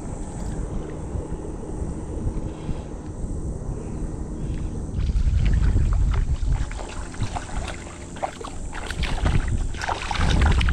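Wind rushing over the microphone while a spinning reel is wound in. About halfway through, a hooked fish starts splashing and thrashing at the surface of the shallow water, a run of short, sharp splashes that grows louder as it is brought close.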